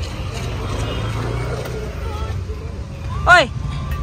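Steady low rumble of a motor vehicle's engine running nearby, under faint background voices. About three seconds in, a short, loud voice sound rises and falls.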